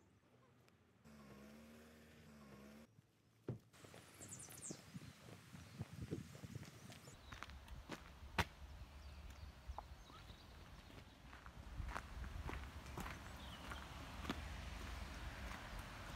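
Footsteps crunching irregularly on a stony woodland path, with a low wind rumble on the microphone from about halfway. A short wavering animal call comes about a second in.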